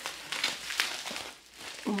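Plastic bubble wrap crinkling and rustling in the hands as a boxed deck is pushed out of it, a run of short crackles that thins out about a second and a half in.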